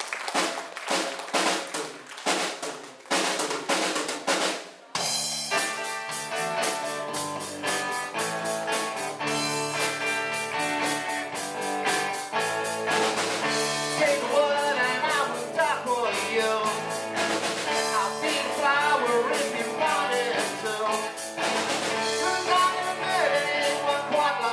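Live rock band: the drum kit plays alone for about the first five seconds, then electric guitars and bass come in together and the full band plays on.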